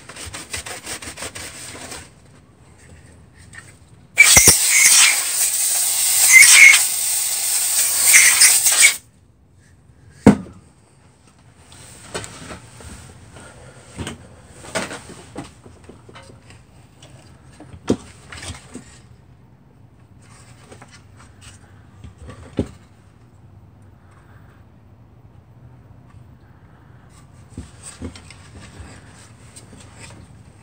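A rag being wiped over a space heater's sheet-metal housing, then a loud, harsh rubbing noise for about five seconds starting about four seconds in. After that come scattered light clicks and knocks as the heater's metal parts are handled.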